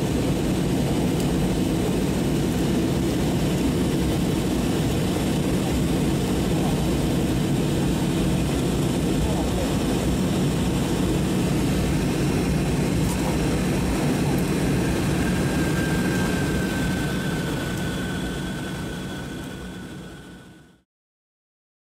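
Steady cabin noise of a jet airliner descending: a constant rumble of engines and rushing air, with a faint thin whistle joining in the last few seconds, then all fading out near the end.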